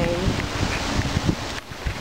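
Wind buffeting the phone's microphone outdoors as a low, uneven rumble.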